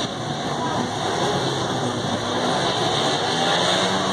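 Several speedway bikes' 500 cc single-cylinder engines revving together at the start gate, a steady dense engine noise.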